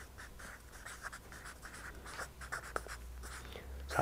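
Marker pen writing on flip-chart paper: a quick run of short, faint scratching strokes as a word is written out.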